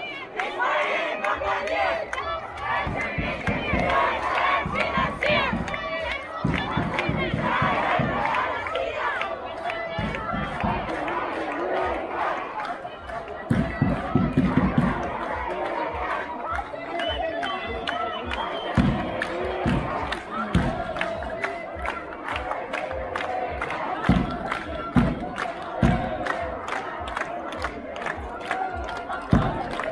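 A large crowd of demonstrators shouting slogans together, many voices at once, with steady rhythmic hand-clapping at about two claps a second.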